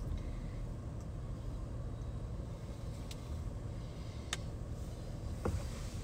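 Steady low rumble of a car heard from inside the cabin, with a few faint clicks.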